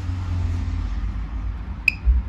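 A steady low background rumble, with one short, sharp, high-pitched click near the end.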